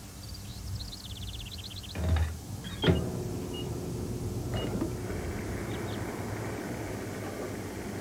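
A falling run of short high chirps, a knock and a sharp click about three seconds in, then a steady mechanical whir as a fuel nozzle pumps gasoline into a car's filler neck.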